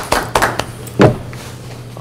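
A few light taps and one louder short knock about a second in, over a steady low hum.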